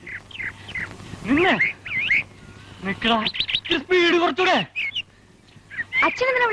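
A person's voice calling out in short drawn-out phrases, rising and falling in pitch, with small birds chirping in short quick notes.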